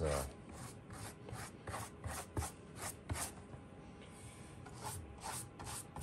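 Paintbrush scrubbing black paint along the rough stone-textured surface of a slot car track in short strokes, about two a second and unevenly spaced.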